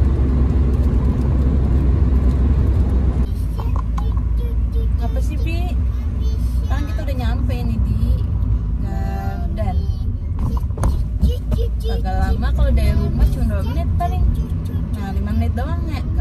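Steady low rumble of a car on the move, heard from inside the cabin, heaviest for the first three seconds, with a woman's voice over it after that.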